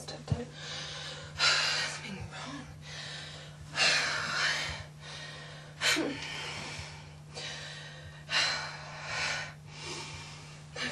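A woman breathing heavily, with loud gasping breaths about every two seconds, over a steady low hum.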